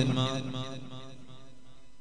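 A man's voice chanting a drawn-out phrase in a melodic, sing-song delivery, loudest at the start and fading within the first second into quieter intoning.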